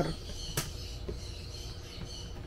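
Quiet handling noise from the back of a picture frame while its hanging wire is being worked loose, with one sharp click about half a second in and a fainter tick about a second in.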